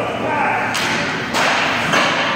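Ice skate blades scraping across rink ice in two long strokes about half a second apart, with a thud near the end.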